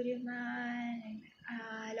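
A woman's voice drawing out two long notes at a steady pitch, sung or held like sung vowels: the first lasts about a second, and the second follows after a short break.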